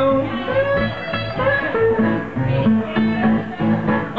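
Live blues played on a resonator guitar and an electric guitar: an instrumental passage of picked notes with a few held notes, and no singing.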